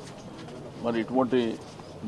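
Speech only: a man's voice, a short pause and then a brief phrase of his speech about a second in.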